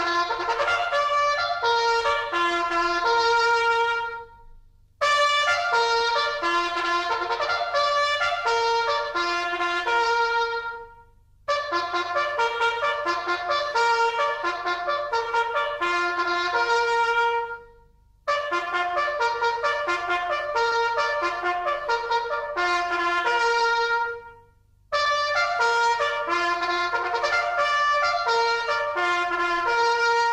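A bugle call for the start of the day, played by a military bugler: clear stepped bugle notes in repeated phrases of about six seconds, each ending in a held note, with short breaks between them.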